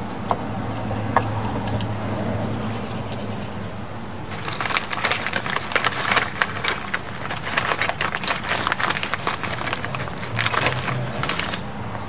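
Metal drum brake hardware on a backing plate clicking and scraping as a brake shoe hold-down pin is worked through from behind. The dense, irregular run of small metallic clicks starts about four seconds in and stops near the end.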